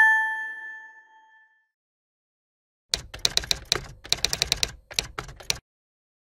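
Outro sound effects: a bright two-tone chime fading away over the first second and a half, then, about three seconds in, a rapid run of typewriter-style keystroke clicks lasting about two and a half seconds.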